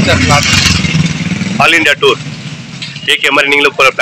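A man speaking over a motor vehicle engine running low and steady, which drops away a little under two seconds in.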